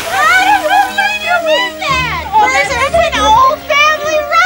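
Women's high, excited voices laughing and calling out over background music with held notes. The tail of a splash into water fades in the first moment.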